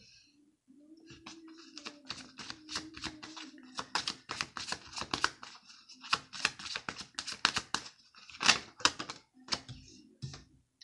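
A deck of tarot cards being shuffled by hand: quick runs of card clicks and snaps, in bursts, the loudest about a second and a half before the end.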